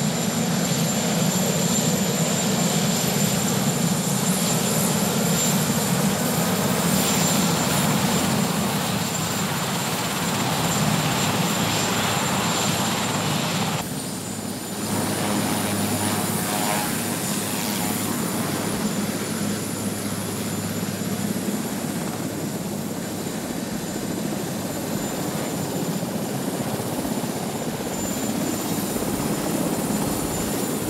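Marine One, a Sikorsky VH-3 Sea King helicopter, running on the ground with its rotors turning: steady rotor noise under a high, even turbine whine. The sound dips briefly about halfway through, then carries on as before.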